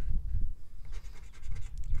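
A coin scraping the scratch-off coating from a lottery ticket in a run of quick, uneven strokes.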